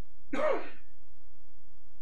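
A person's single brief vocal sound, such as a throat-clear, lasting about half a second and starting a third of a second in, over steady low room hum.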